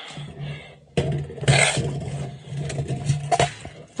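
Scraping and handling noises from a steel tape measure being pulled out and held against the truck's wheel arch, starting suddenly about a second in, with a few light clicks near the end, over a low steady hum.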